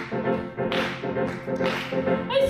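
Grand piano playing, a few chords struck about half a second apart with the notes ringing on between them.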